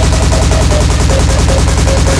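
Terrorcore played loud: a very fast, evenly spaced kick drum hammering out hits in quick succession, with a short synth riff above it that steps up and down between a few notes.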